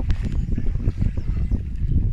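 Wind buffeting the microphone, a steady rough low rumble with little else above it.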